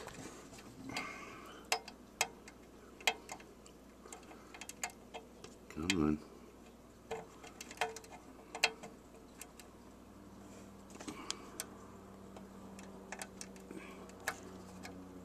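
Irregular small clicks and ticks of fingers working a wire connector onto the terminal of an illuminated rocker switch, with handling noise of the handheld camera.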